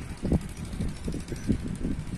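Wind buffeting the microphone: an uneven low rumble that swells in gusts, with stronger buffets about a third of a second in and again around a second and a half.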